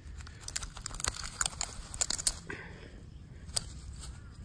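Nickel strip being pulled off spot-welded 18650 cells with pliers: a quick run of sharp snaps and crackles as the spot welds tear loose, then one more snap near the end.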